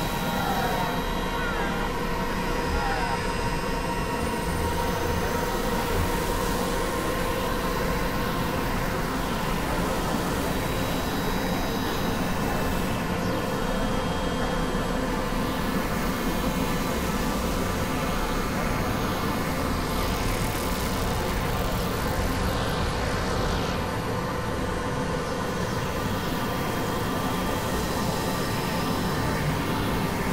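Dense experimental noise collage: several music tracks layered and processed into a steady wall of noise, with a few faint held drone tones running through it.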